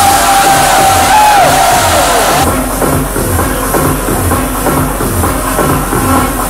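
Electronic dance music at club volume, driven by a steady kick drum about twice a second. For the first two and a half seconds a held high note that slides at its ends sits over crowd noise. Then the treble cuts off abruptly.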